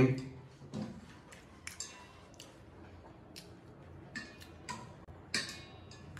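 A few light, scattered clicks and taps of chopsticks against a plate and a small steel bowl while picking at braised carp; a couple of them, near the end, ring briefly like metal or china.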